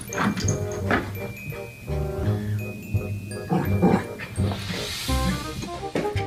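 Background music with a small dog barking over it.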